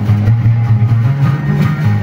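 Live band music without vocals: plucked guitar over a loud, repeating bass line.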